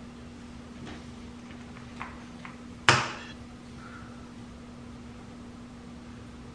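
A few light clicks of things being handled, then a single sharp knock about three seconds in, typical of a bathroom cabinet door shutting, over a low steady hum.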